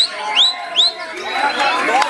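White-rumped shama singing: three quick, loud upward-sweeping whistles in the first second, then a fainter high held note. Crowd chatter and calling voices run underneath throughout.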